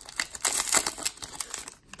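Foil wrapper of a 2019 Donruss football card pack crinkling in irregular crackles as it is peeled open by hand, going quiet just before the end.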